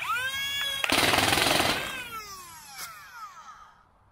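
Lepus full-auto flywheel foam-dart blaster: its flywheel motors spool up with a rising whine, then the pusher fires darts in a rapid full-auto burst of about a second, emptying the magazine. The flywheels then spin down with a falling whine. The newly rewired MOSFET setup is working.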